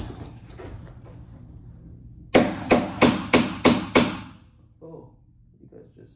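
Makeshift hammer banging on the top of a door, six sharp blows in quick succession, about three a second, then a couple of lighter knocks. The door is being knocked to clear a top corner that rubs because it is out of alignment.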